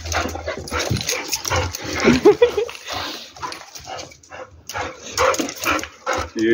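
Dogs, a young Portuguese Podengo and an older Boxer-Pointer cross, giving short whines and yips as they meet and play, over a busy run of quick clicks and scrapes.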